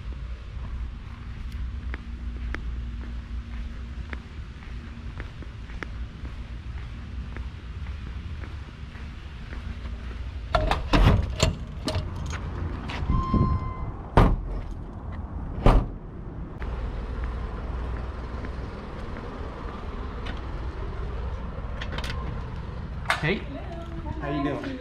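A steady low rumble of movement, then a cluster of loud clunks and bangs a little under halfway through, from the doors and cargo of a FedEx delivery truck being handled. A short beep sounds among the bangs.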